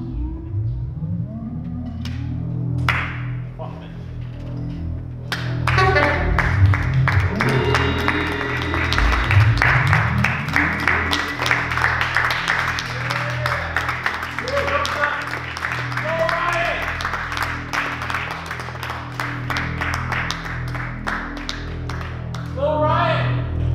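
Live free-improvisation band music: a steady low drone runs throughout, with dense, rapid percussive clatter building from about six seconds in and sliding pitched lines over it.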